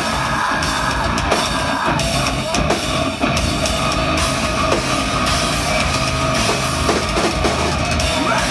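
Progressive metal band playing live and loud, with distorted electric guitars and a drum kit.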